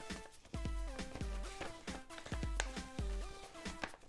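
Background music with a steady beat: low bass pulses under short melodic notes stepping up and down in pitch.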